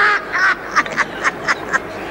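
A man laughing in a run of short pitched 'ha' bursts, about four a second, loudest at the start.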